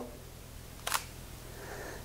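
Sony a6000 mirrorless camera's shutter clicking once, about a second in, as it takes a high-speed sync shot at 1/2000 s.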